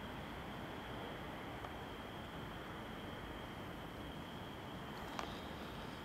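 Steady faint background hiss with a thin, constant high-pitched whine running under it, and one faint click about five seconds in.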